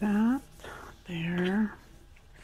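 A woman's voice making two short wordless hesitation sounds, the first brief and the second longer, each rising in pitch at the end.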